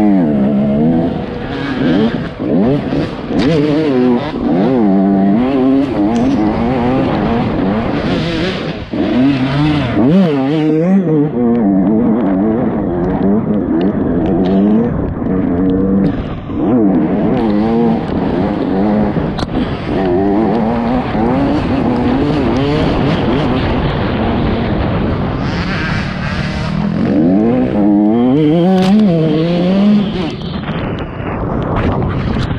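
Dirt bike engine heard from the rider's helmet, revving up and down over and over as the rider accelerates, shifts and backs off along the trail, with a short drop in revs about ten seconds in.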